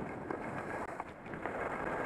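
Wind rushing over a helmet-mounted camera's microphone at skiing speed, mixed with the steady hiss of skis sliding on groomed snow.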